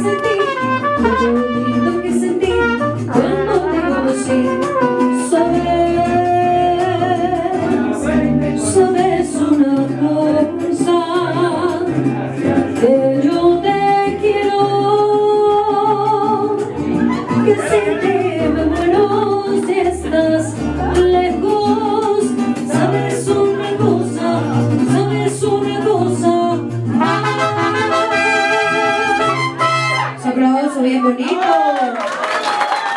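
Live mariachi band playing a song, with a sung vocal, brass and a stepping bass line. It ends on a long held chord near the end.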